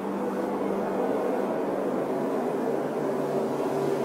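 A geyser venting steam and water with a steady rushing hiss.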